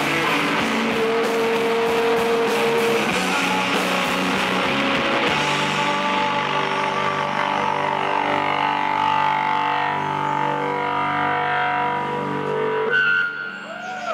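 Live rock band playing electric guitars, bass and drums. About five seconds in, the beat drops out and the band holds ringing chords, which fade away near the end as the song closes.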